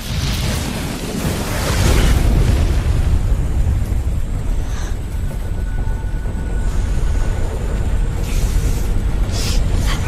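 Film sound effect of a fire portal bursting into flame: a sudden rumbling burst that keeps rumbling, swelling about two seconds in and again near the end, with music under it.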